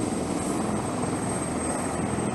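AH-1Z Viper attack helicopter running on the ground with its rotor turning: a steady rotor and twin-turboshaft engine sound with a thin, high, constant whine above it.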